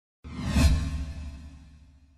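A whoosh transition sound effect: it comes in suddenly about a quarter second in, peaks within half a second, then fades away over about a second and a half.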